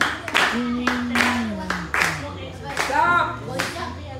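Congregation clapping hands to a steady beat while a voice sings a praise song, holding one long note that falls in pitch about half-way through.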